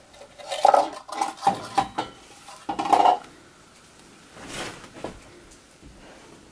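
Sheer ribbon being folded and pinched into bow loops by hand, crinkling and rustling in bursts over the first three seconds, then going quieter, with one fainter crinkle near the fifth second.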